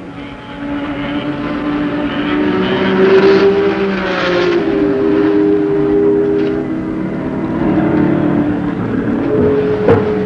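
Racing car engines running at speed, a steady drone that swells over the first few seconds and shifts in pitch partway through.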